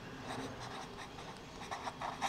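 Pen writing on paper: a run of faint, short, irregular strokes as figures and letters are written out.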